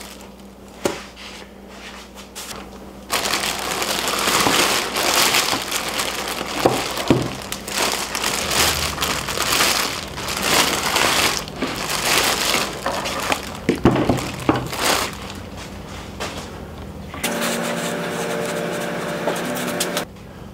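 Clear plastic packaging bag crinkling and rustling in a long irregular stretch as a corded power tool is pulled out of it. Near the end, a steady hum takes over.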